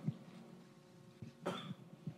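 A single faint cough from a person in the room, about one and a half seconds in, over quiet room noise.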